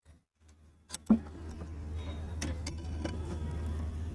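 Small metallic clicks and a sharp knock about a second in, from hands handling the shuttle hook and feed dog of an Umbrella-model sewing machine, over a steady low hum.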